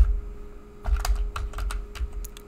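Computer keyboard keys clicking during typing: a few scattered keystrokes, then a quick run of them in the second half, over a steady low hum.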